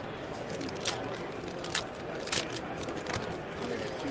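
Trading-card foil pack being opened and its cards handled: a few short, sharp crinkles and clicks over faint background chatter.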